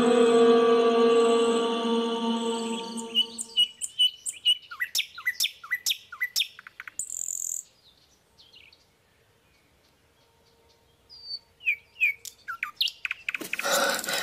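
A soft ambient music drone fading out over the first few seconds, then small birds chirping in short, repeated downward notes. A gap of near silence follows, then a few more chirps, and near the end a loud clatter of metal pots and dishes begins.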